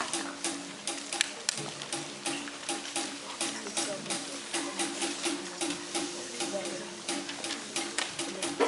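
Newspaper sheets being rustled and crumpled, with broom bristles swishing on a hard gym floor, in many quick irregular strokes. It is a performance piece that uses paper and brooms as percussion.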